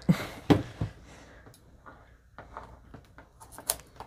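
Long cardboard kit box handled on a wooden tabletop: a few knocks and scrapes in the first second as it is moved, the loudest about half a second in. Then faint rustling and small clicks of fingers working at the box's end to get it open.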